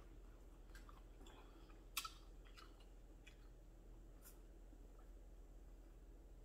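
Near silence with faint eating sounds: a few soft mouth clicks from chewing, one sharper click about two seconds in.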